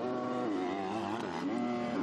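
Two MX2 motocross bikes' 250cc four-stroke engines revving hard, their pitch dipping and stepping back up.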